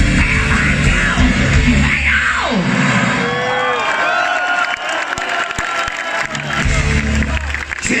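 Heavy metal band playing live, recorded from among the audience: a loud sustained distorted section, then a long sweep down in pitch about two seconds in. After that the band drops back and the crowd cheers and shouts over it, before the heavy playing comes back loud near the end, ending on a shouted "Kill".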